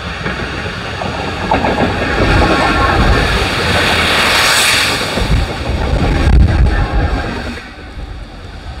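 A diesel freight locomotive approaches and passes close, its engine running, loudest about four and a half seconds in. The low rumble of tank wagons rolling over the rails follows and drops away near the end.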